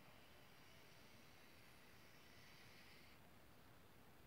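Near silence, with a faint, steady scratchy hiss of an overhead-projector marker tip drawn across card stock as a compass arc is traced. The hiss stops about three seconds in.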